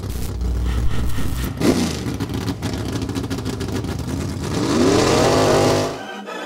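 Car engine revving: the pitch drops once about a second and a half in, then climbs steadily through a rising rev near the end.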